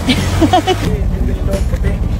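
Brief indistinct voices in the first second, over a steady low rumble that runs throughout.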